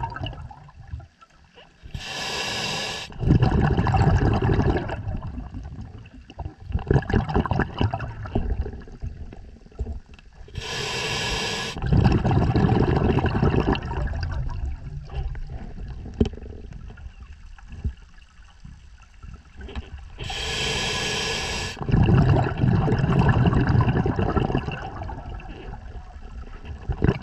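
Scuba diver breathing through a regulator underwater: three breaths about nine seconds apart, each a short hiss of inhaled air followed by a low rumble of exhaled bubbles.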